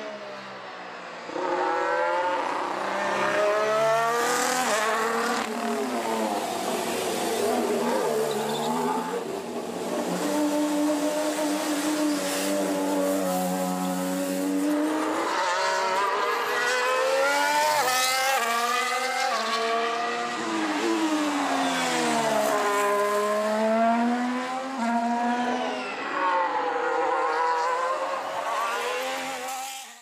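2022 Formula 1 cars' 1.6-litre turbocharged V6 hybrid engines running at speed, the engine note rising and falling again and again as the cars accelerate, shift and brake, with a steadier held note for a few seconds in the middle.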